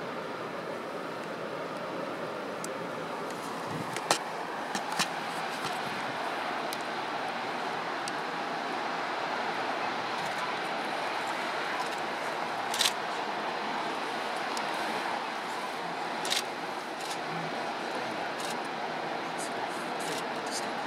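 Steady rush of surf breaking on a sandy beach, with a few short, sharp clicks scattered through it.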